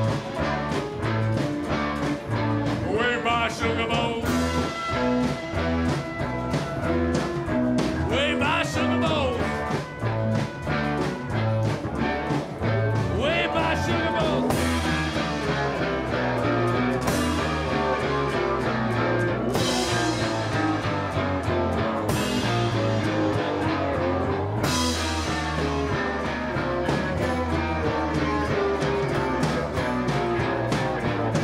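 Live rock band playing an instrumental passage: acoustic and electric guitars, accordion, trumpet and drums over a steady beat, with cymbal crashes every two to three seconds in the second half.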